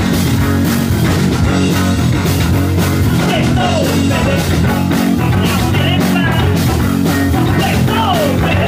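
Punk rock band playing live, recorded from within the crowd: electric guitar, bass and drums at a steady, driving beat.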